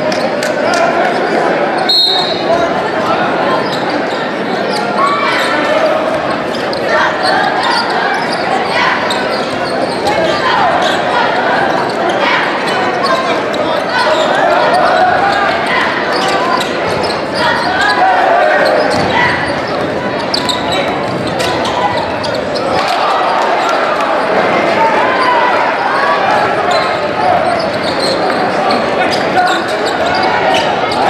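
Basketball game in a gymnasium: a ball dribbling on the hardwood court amid steady crowd chatter and shouts.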